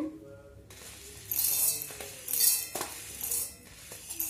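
Dry-roasted sabudana (tapioca pearls) poured and pushed with a spoon off a steel plate into a stainless-steel mixer-grinder jar. The hard pearls rattle against the metal in three short bursts about a second apart.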